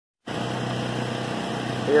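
Chantland E-12 bag-moving belt conveyor running steadily, a low, even hum from its drive and belt.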